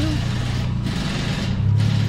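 Toyota Chaser JZX100's turbocharged 1JZ-GTE VVTi straight-six with a 3-inch straight-pipe exhaust, running at low revs as the car creeps and turns at parking speed. The low exhaust note gets louder near the end.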